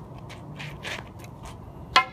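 A staff swishing faintly as it is spun, then a single sharp clack just before the end as the dropped staff hits the asphalt.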